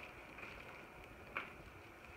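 Faint handling noise of a bubble-wrapped vacuum wand being lifted from its carton, with one light click about a second and a half in.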